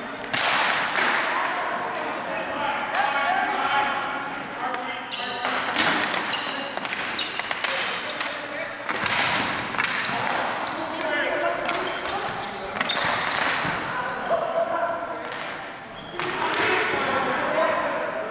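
Ball hockey play on a gymnasium floor: repeated sharp clacks of sticks on the ball and the hard floor, with players shouting.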